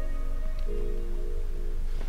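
Background music of soft, sustained chords that change every second or so.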